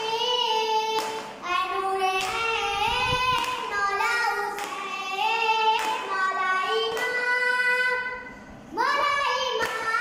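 A boy singing a noha, a Shia Muharram lament, unaccompanied, in long held notes that waver and slide between pitches, with short breaks between phrases.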